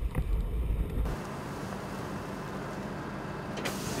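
Vehicle driving over gravel, picked up by a camera mounted low beside a tyre: a heavy low rumble for about the first second, then steady road noise. Near the end it cuts to a brighter hiss of meat sizzling on a grill.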